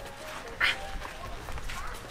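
Footsteps on a dirt path, with a short vocal sound about half a second in.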